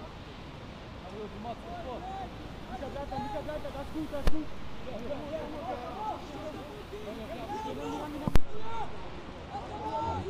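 Shouts and calls from around a football pitch during open play, with two sharp thuds of a football being kicked: one about four seconds in and a louder one just after eight seconds.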